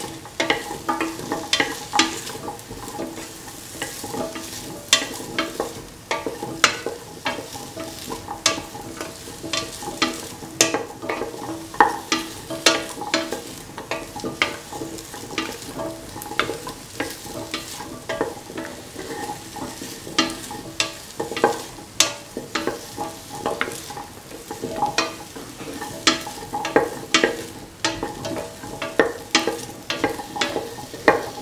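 Potato and carrot pieces being stirred and sautéed in oil in a stainless steel pan: frequent irregular clicks and scrapes of the utensil against the metal over a light sizzle, with a steady hum underneath.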